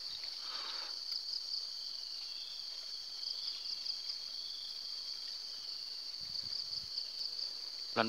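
A steady, high-pitched chorus of insects, with a light pulsing texture.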